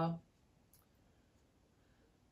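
The end of a spoken word, then near silence: room tone with one faint click about three quarters of a second in.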